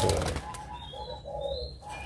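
Zebra doves (perkutut) cooing in a run of short, evenly spaced notes, with a brief burst of noise, like a wing flutter, at the very start.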